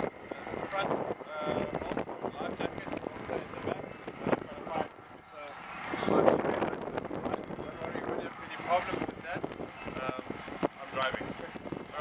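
A man talking, with wind on the microphone.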